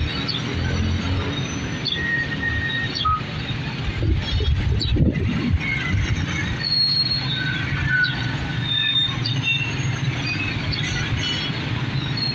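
Mixed road traffic at an intersection: motorcycle, tricycle and car engines running and passing in a steady rumble, with several brief high-pitched squeals over it.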